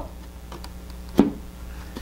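Foam battery hatch of a Dynam Waco DMF-5 model biplane snapping onto the magnets in the fuselage: a single sharp pop a little over a second in.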